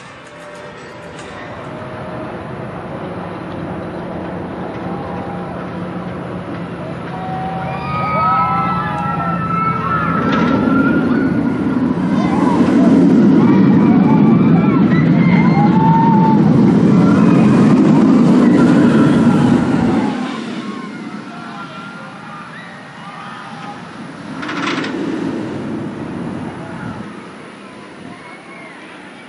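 Mako's B&M hyper coaster train passing, with a rumble that builds, holds loud for several seconds and cuts off sharply about twenty seconds in. Riders scream over it as it goes by.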